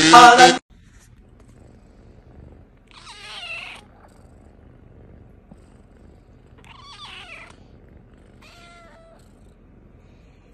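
A burst of loud electronic music cuts off half a second in. Then kittens purr quietly and steadily, with three short, high, wavering mews about three, seven and eight and a half seconds in.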